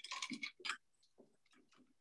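A paintbrush rinsed in a glass jar of water: a faint quick run of small clicks and taps against the glass in the first second.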